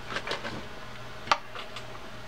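Small clicks from parts of a Shimano TLD 10 lever drag reel being handled: a few light ticks, then one sharp click about a second in.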